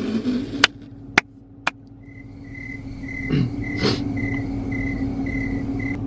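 A car's warning chime beeping steadily, about two and a half high beeps a second, over the low steady hum of the car running. A few sharp clicks sound in the first two seconds.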